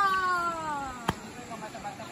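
A person's long drawn-out call that slides steadily down in pitch for about a second, followed by a sharp click.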